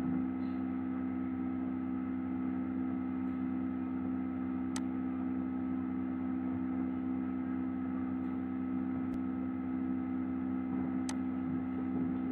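Steady electrical hum in the recording, with a few faint clicks about five seconds in and near the end.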